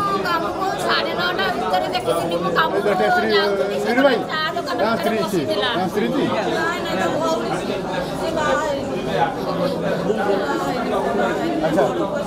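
Speech only: a woman talking to reporters, with other voices chattering around her.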